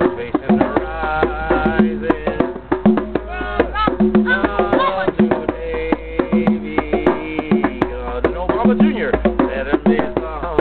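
Hand drums, djembe and conga among them, played together in a dense, steady drum-circle rhythm, with voices over the drumming.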